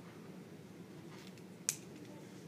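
A single sharp click near the end, over a quiet, steady low room hum, with a few faint short scratchy sounds just before it.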